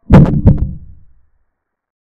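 Chess software's piece-capture sound effect: two sharp wooden-sounding knocks about 0.4 s apart, dying away within a second.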